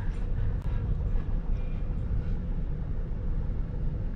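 Vehicle engine and road noise heard inside the cab while driving on a snowy road: a steady low rumble with no sharp events.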